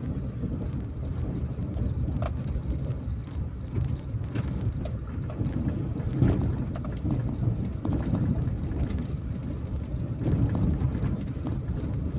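Car driving slowly over a rough, unpaved road, heard from inside the cabin: a continuous low rumble of the engine and tyres, with a few knocks and jolts from bumps, the sharpest about six seconds in.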